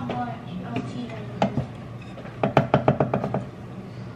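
Wooden spatula knocking against the rim of a cooking pan: one sharp knock about a second and a half in, then a quick run of about eight knocks in roughly a second.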